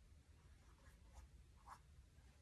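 Near silence with a few faint, short brush strokes of a paintbrush on canvas in the second half.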